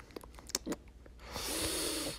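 A few faint clicks, then a person's breathy, hissing breath lasting about half a second near the end.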